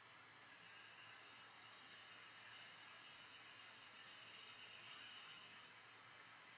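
Faint, steady hiss of a butane torch lighter's jet flame held to the foot of a cigar. It grows louder about half a second in and falls back near the end.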